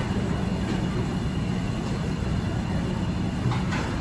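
Steady low rumble of restaurant room noise, with a few faint light clicks.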